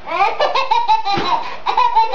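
Babies laughing: high-pitched giggles in quick repeated bursts.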